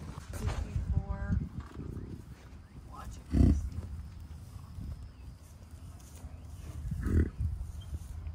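American bison grunting: two deep, short grunts, about three and a half seconds in and again near the end, with a shorter, higher call about a second in.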